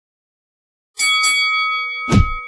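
Silence, then about a second in a bright bell-like ding struck twice in quick succession, ringing on and slowly fading: a sound effect for an animated logo intro.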